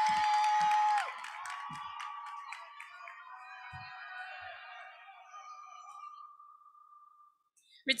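Audience cheering for a graduate: a long, steady, high held note in the first second, then scattered shouts, whoops and claps that fade away to near silence near the end.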